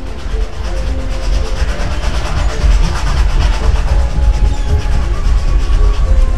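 Steam train sound effect, a rumbling, rhythmic clatter that grows louder over the first few seconds and then holds steady, over background music.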